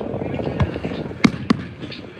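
Aerial firework shells bursting with three sharp bangs: one about half a second in, then two close together past a second in. Wind noise on the microphone runs underneath.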